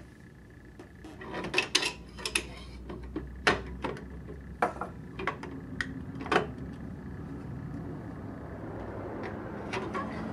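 Hard plastic and chrome metal vending-machine parts being handled and fitted: the plastic dispensing wheel and the hopper on its central shaft. A series of scattered clicks and knocks through the first six or so seconds, then quieter.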